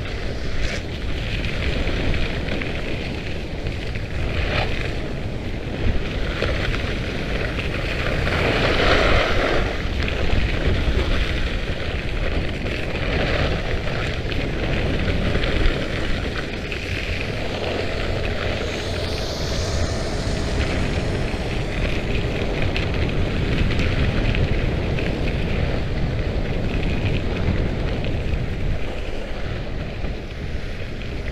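Wind rushing over the microphone and skis scraping and chattering over icy hardpacked snow during a fast descent. A little past halfway, a snowmaking gun's rushing blast swells and fades as it is passed.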